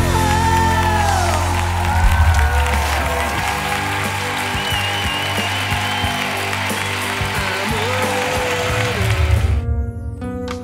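The song's last notes ring out, then a studio audience and coaches applaud and cheer. The sound cuts off abruptly just before the end.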